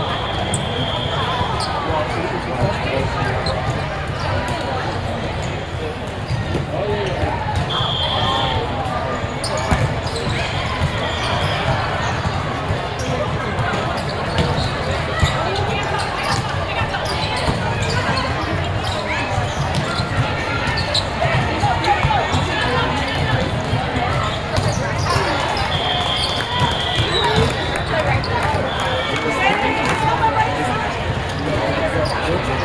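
Busy volleyball tournament hall: a steady babble of many voices, with volleyballs being struck and bouncing throughout. Short referee-style whistle blasts sound about five times, near the start, twice in the middle and twice near the end.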